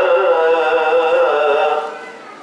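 A man's voice chanting a slow, melodic Islamic prayer recitation in long held, wavering notes, heard over the mosque's loudspeakers. The phrase fades out near the end.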